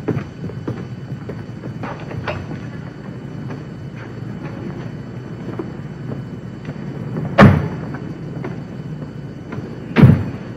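A car door slamming shut with one loud thump about seven seconds in, over a low steady rumble and a few faint knocks.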